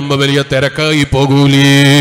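A man's voice chanting in a sing-song preaching style: a few short phrases that move in pitch, then one long note held steady through the second half.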